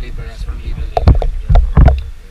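River water sloshing and lapping against a floating table right by the microphone, in uneven low surges, with a few short louder splashes or voices around the middle and near the end.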